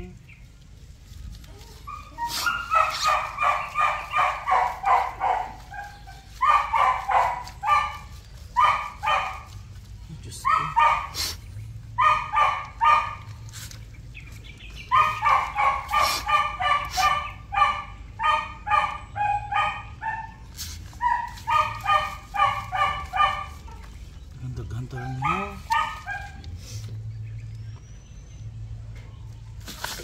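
A dog barking repeatedly in bouts of rapid barks, about three a second, with short pauses between bouts.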